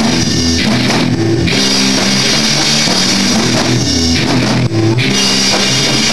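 Punk rock band playing live, loud: distorted electric guitars, bass and a drum kit. Twice the cymbal wash cuts out for about a second while the guitars and bass hold their notes.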